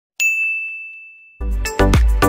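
A single bright bell ding, the notification chime of an animated subscribe-and-bell graphic, rings out and fades over about a second. Then music with a heavy beat starts.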